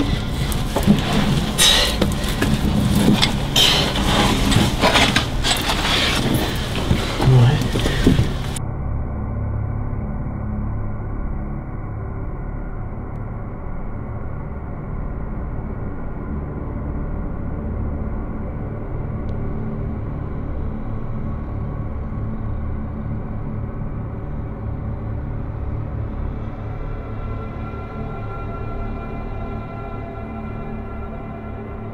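Close scraping and rustling from someone crawling through a narrow brick drain tunnel, irregular and noisy. About eight seconds in it cuts off abruptly and gives way to ambient music of steady held tones that runs on.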